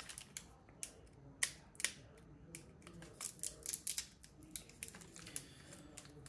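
Pokémon trading cards handled and set down on a tabletop: an irregular run of light, sharp clicks and taps, the loudest about a second and a half in.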